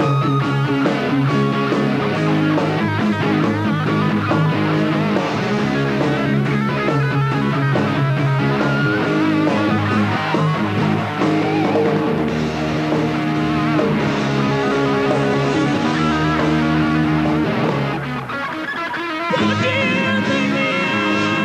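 Live rock band playing: electric guitars, bass and drums. The music drops back briefly near the end, then the full band comes back in loudly.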